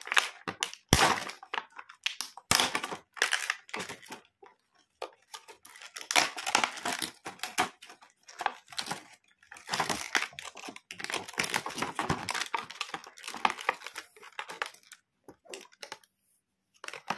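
Clear plastic packaging on a toy doctor kit case crinkling and crackling as hands press and grip it, in irregular bouts. There are a couple of sharp snaps in the first few seconds and short pauses between handlings.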